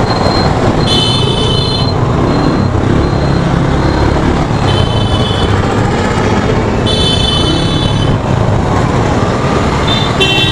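Yamaha FZ-V3 single-cylinder motorcycle riding in traffic: steady engine and wind noise on the camera mic. Vehicle horns honk three times: about a second in, around the middle, and a longer blast near the end.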